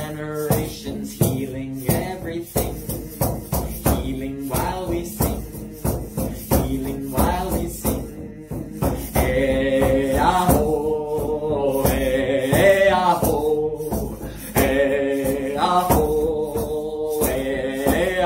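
Hand-held frame drum struck with a beater at a steady beat, under a voice singing a slow chant. The sung notes become longer and stronger from about halfway in.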